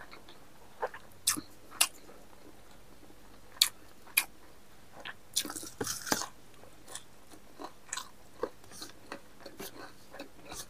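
Close-up eating sounds of a man eating by hand: sharp, wet mouth clicks and smacks of chewing, scattered through and busiest just past the middle as he takes a mouthful.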